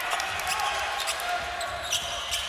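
A basketball being dribbled on a hardwood court over the steady background noise of a large arena.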